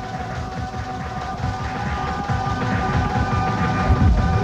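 Techno from a live club DJ set: a dense, pulsing bass-heavy beat under sustained synth tones, growing louder toward the end as a heavier beat comes in.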